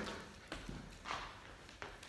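A handful of faint, unevenly spaced taps and thumps of feet and a skipping rope on a hard hall floor.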